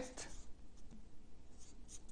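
Felt-tip marker writing a word on paper: faint, short scratchy strokes.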